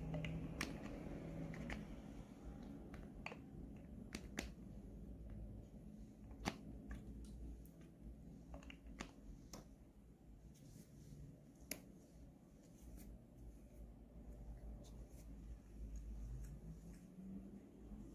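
Faint scattered clicks and taps from handling a liquid foundation bottle and its applicator and dabbing foundation onto the face with the fingertips, over a low room hum.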